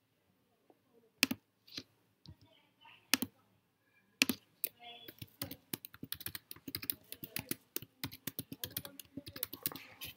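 A few single mouse clicks a second or two apart, then rapid computer keyboard typing through the second half as a password is keyed in twice.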